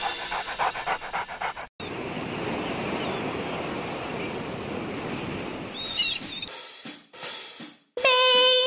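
A quick run of drum and cymbal hits closing a children's song. After a short break comes a steady rushing of sea waves, with a brief high cry about six seconds in.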